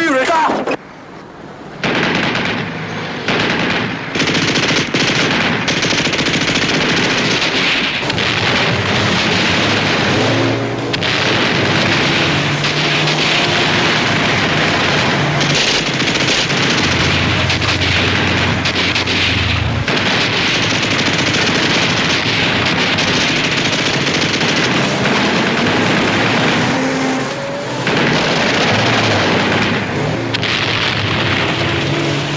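Continuous machine-gun fire and gunshots of a battle scene, dipping briefly about a second in. Vehicle engines rise and fall beneath it at times.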